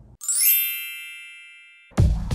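A bright, tinkling chime sound effect: a quick upward run of bell-like tones a third of a second in, then ringing and fading away over about a second and a half. Electronic background music starts just at the end.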